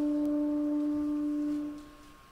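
A single held woodwind note, steady and fairly pure, that dies away about one and a half seconds in, leaving a quiet pause in the orchestra.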